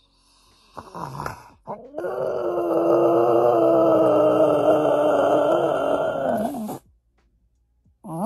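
A sleeping flat-faced dog makes a short breathy grunt, then one long groan of about five seconds at a nearly steady pitch. The groan wavers just before it stops.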